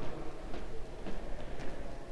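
Footsteps on a hard floor, about two a second, over the low rubbing rumble of a camera being carried at walking pace.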